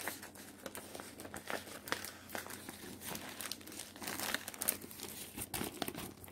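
Clear plastic sheet protector crinkling and crackling in irregular small clicks as it is handled and a card with a crochet sample is slid inside.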